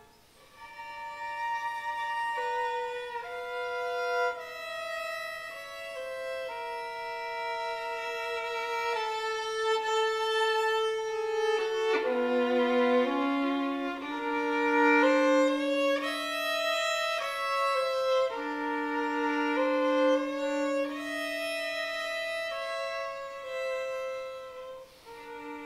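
Solo violin playing slow, held bowed notes that change every second or two, often two notes at once, after a brief break just at the start.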